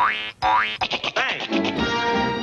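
Cartoon soundtrack: two quick rising whistle-like glides, a rapid run of short notes, then orchestral score playing steadily from about halfway in.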